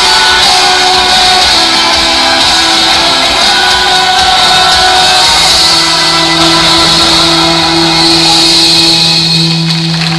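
Loud show music accompanying a live stage dance act, with a low note held steadily from about halfway through.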